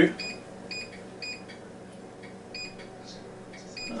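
Power Air Fryer XL's digital control panel beeping as its menu button is pressed over and over to cycle through the cooking presets. Each press gives one short, high beep, several of them at uneven intervals.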